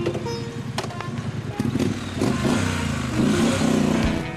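Motorcycle engine revving as the bike pulls away and speeds up, under background music.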